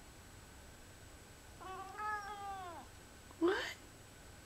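Lynx point Siamese cat vocalizing at the leaves it is watching: one drawn-out meow that falls in pitch at its end, then about a second later a short, louder call that rises sharply in pitch.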